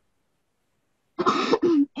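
Silence, then a person coughs twice in quick succession a little past a second in.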